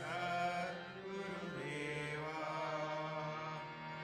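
Devotional mantra chanting: a voice singing over a steady low drone.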